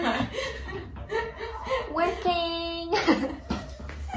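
A woman chuckling and making short playful vocal sounds, with one drawn-out held note a little after two seconds in.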